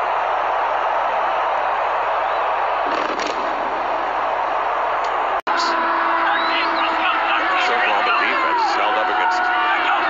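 Football stadium crowd noise and cheering, a dense steady din that breaks off in a brief dropout about five and a half seconds in. The crowd noise then carries on, with a few held tones and shouting voices in it.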